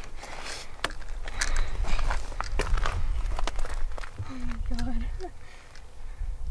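Footsteps crunching on dry ground and brushing through dry scrub, a scatter of short crackles and clicks over a low rumble. A brief low voice sound comes about four seconds in.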